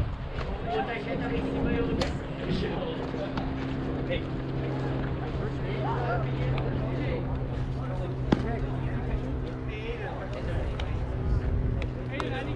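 Distant shouts and chatter from baseball players and spectators over a steady low mechanical hum, with one sharp crack about eight seconds in.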